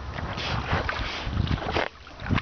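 Water splashing and sloshing in irregular bursts as a dog paddles through a lake, with wind rumbling on the microphone.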